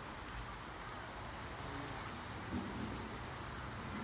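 Steady rushing hiss of a flooded river flowing past, with low wind rumble on the microphone.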